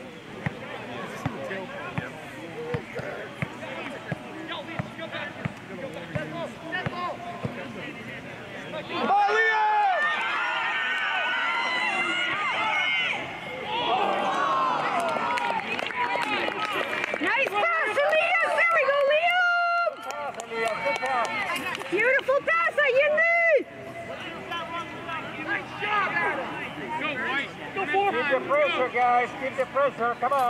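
Soccer spectators and players shouting, several loud voices overlapping from about nine seconds in for some fifteen seconds, after a stretch of scattered ticks and knocks.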